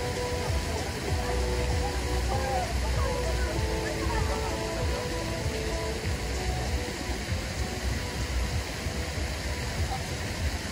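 Busy park ambience: chatter from many distant voices with faint music, over a steady low rumble and a haze of noise.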